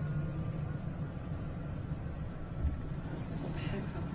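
Steady low rumble of a vehicle driving along a road, with a soft thump about two and a half seconds in.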